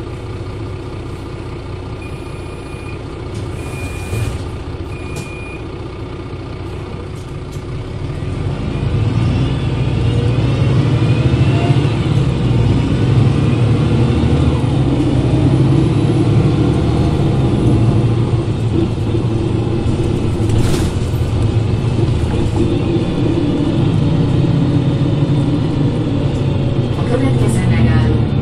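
Mercedes-Benz OM906 LA inline-six turbodiesel of a 2003 Citaro city bus, heard close to the engine. It idles with three short electronic beeps, then from about eight seconds in it works harder as the bus pulls away under load. A whine rises as the ZF automatic gearbox takes up drive, and it settles into a steady, louder run.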